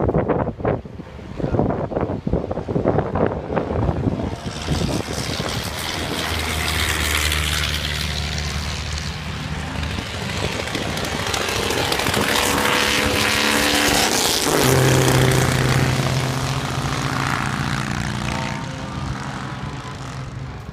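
Vintage racing car engines going past on the circuit. The engine noise builds from about four seconds in, with steady engine notes from more than one car, is loudest about fifteen seconds in, and fades near the end.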